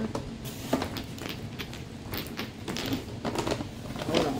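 Rustling, crackling and light knocks of packaged items being handled and sorted through by hand, in short irregular bursts.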